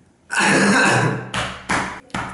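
A man's voice, not words: a long throat-clearing sound followed by two short coughs.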